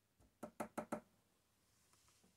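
Four quick knocks, about six a second, with a faint tap just before them: a hard object tapped against a surface.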